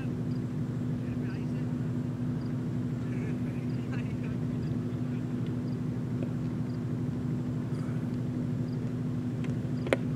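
A steady low hum with faint distant voices. Just before the end comes a single sharp crack of a cricket bat striking the ball in a shot that goes for a boundary.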